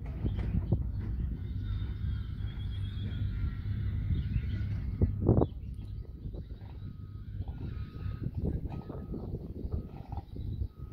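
Outdoor ambience: a steady low rumble with irregular bumps, and one louder thump about five seconds in. Faint short high tones repeat through the second half.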